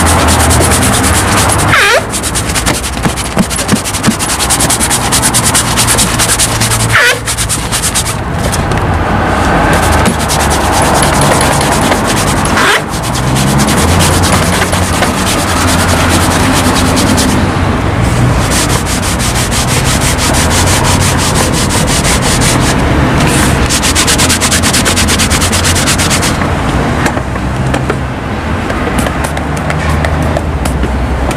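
A shoeshine cloth, dampened with water, rubbed in quick, steady back-and-forth strokes over a waxed black leather shoe to buff it to a shine, with a few short breaks.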